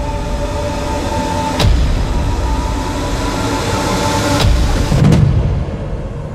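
A steady, loud low mechanical rumble with a held hum, cut by sudden hits about one and a half and four and a half seconds in and a heavier low thud about five seconds in; it drops away near the end.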